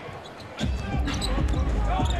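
Basketball dribbled on a hardwood court amid arena crowd noise, which swells loudly about half a second in.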